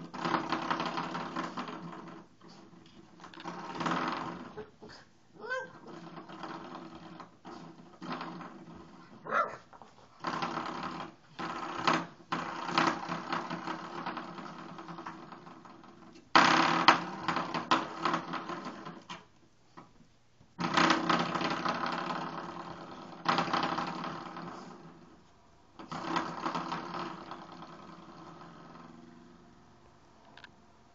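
Spring doorstop flicked again and again by a puppy's paw, each flick a sudden buzzing 'boing' that rings and fades over a second or two, about eight times through the stretch.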